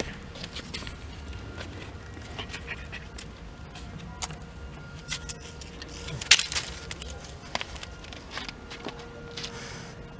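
A dog sniffing along stone rocks: a string of short, irregular sniffs and snuffles, with one louder sniff about six seconds in, over a low steady rumble.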